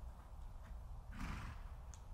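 A horse gives one short neigh of about half a second, a little past a second in, over a steady low rumble in the background.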